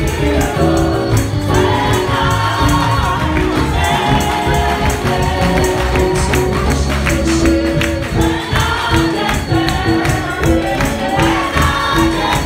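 Gospel choir singing through microphones, with a keyboard and a low bass line, and percussion keeping a steady beat throughout.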